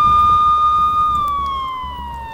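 A police siren in a single long wail: the tone holds steady at its peak, then slowly falls in pitch from about a second in.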